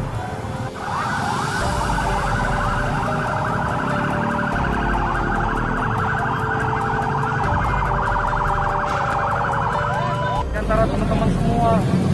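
Police car siren in a fast yelp, rising sweeps repeating quickly. It starts about a second in and cuts off abruptly near the end.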